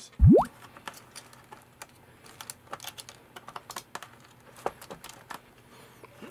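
The small DC pump motor of a Swiffer WetJet briefly spins up with a short rising whine. This is the dead pump motor coming back to life after being tapped, a temporary fix. It is followed by scattered light clicks and taps of hands handling the plastic housing.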